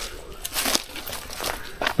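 Dry leaves and brush rustling and crackling in a scatter of short, irregular crackles.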